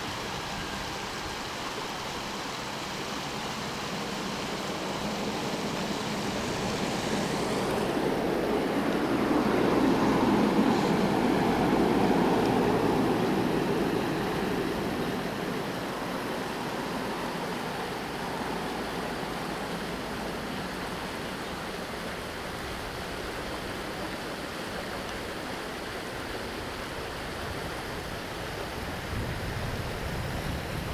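River water running over stones in a shallow, rocky riffle: a steady rushing noise that grows louder for a few seconds about a third of the way in, then settles back.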